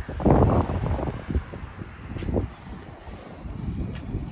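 Wind buffeting the phone's microphone: irregular low rumbling, with a strong gust in the first second.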